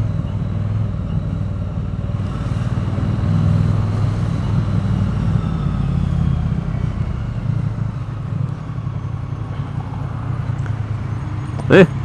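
Triumph Bonneville T100's parallel-twin engine running as the bike is ridden, heard from the rider's seat. Its level eases off over the last few seconds as the bike slows to a stop.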